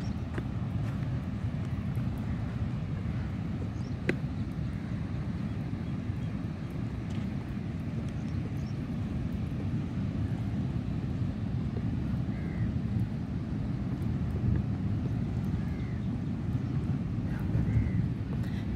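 Wind buffeting the microphone: a steady, irregular low rumble, with one sharp click about four seconds in.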